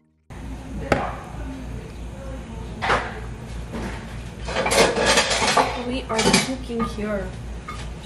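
Kitchen clatter: a few clinks and knocks of metal utensils against pots and pans, with a busier run of them about halfway through, over a steady low hum.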